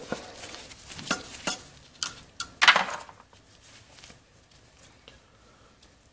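Hand tool work on a CRT projection tube's housing: a screwdriver and small metal parts clicking and clinking as a screw and a small metal plate are worked loose. There are a few sharp separate clicks, a louder clatter about two and a half seconds in, then only faint handling ticks.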